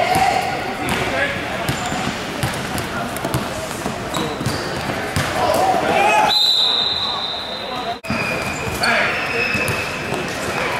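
Basketball bouncing and hitting the gym floor during play, with players' voices echoing in a large hall. A steady high tone sounds for about a second and a half past the middle.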